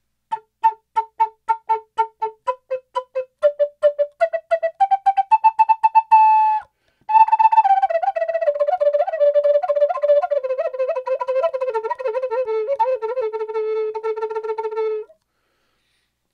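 Native American flute played with 'ticka-ticka' tongued articulation. It opens with short, separate notes that climb step by step and speed up. After a brief breath comes a faster run of tongued notes that winds downward and ends on a held low note.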